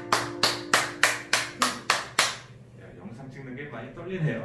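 A single pair of hands clapping about eight times, evenly at about three claps a second, over the fading last chord of two acoustic guitars. The claps stop a little after two seconds, and faint talk follows.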